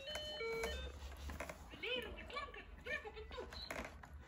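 A children's toy laptop beeps as its keys are pressed, giving a quick run of short electronic tones at several pitches in the first second.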